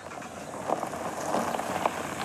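Car tyres crunching over a loose gravel road as the car pulls away, with small stones popping and clicking; the sound builds from quiet in the first half second.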